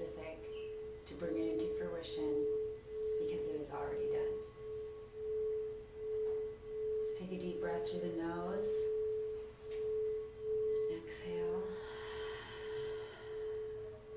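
Quartz crystal singing bowl sounding one steady, pure tone as its rim is rubbed, the tone swelling and fading a little faster than once a second.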